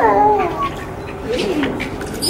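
A young baby fussing and crying: a loud wail whose pitch falls away in the first half second, then a shorter rising-and-falling cry about one and a half seconds in.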